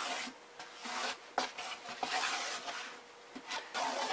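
Marker and hands scratching and rubbing on a cardboard box as it is marked out and handled: several short scratchy strokes, with a light knock about one and a half seconds in.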